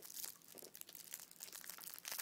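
Faint, irregular crackling of a peppermint candy being chewed, crumbling easily in the mouth.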